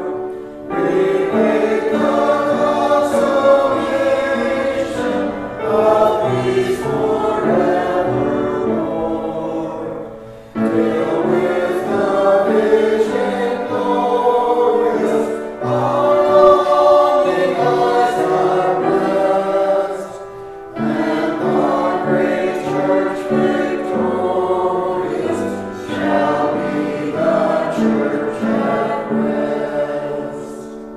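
A small church choir of men and women sings a sacred choral piece in long, sustained phrases, with short breaks between phrases about ten and twenty seconds in.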